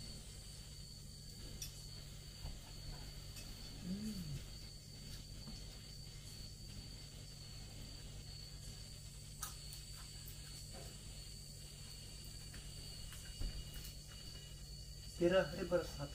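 Faint, steady high-pitched drone of night insects, with a low steady hum beneath it and a few faint ticks. A voice comes in briefly near the end.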